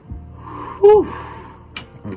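A man's short breathy vocal sound: an audible breath, then a loud, quick 'ah' that drops sharply in pitch about a second in, followed by a sharp click shortly before the end.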